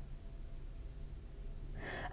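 A quiet pause with faint low room hum, ending in a short in-breath just before speech resumes.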